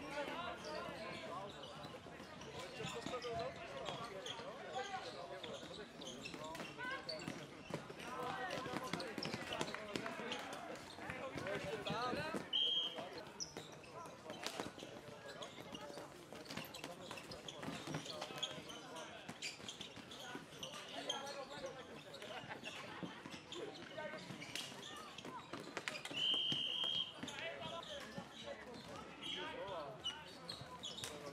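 Floorball game: players' voices calling and shouting over sharp clacks of sticks and the plastic ball. A whistle blows briefly about twelve seconds in and again for about a second near the end.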